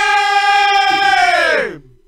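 Men bellowing one long held, sung-out note that stays level, then slides down in pitch and dies away just before the end.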